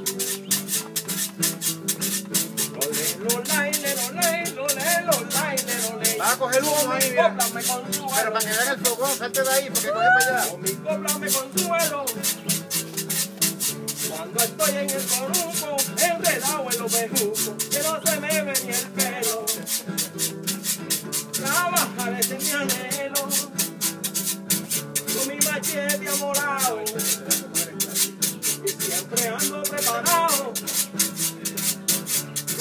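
Acoustic guitars playing Puerto Rican country (jíbaro) music, with hand percussion shaken or scraped in a fast, steady rhythm. Melodic phrases come and go over the strumming.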